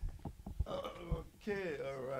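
A man's voice making short wordless vocal sounds, with a few soft knocks just before.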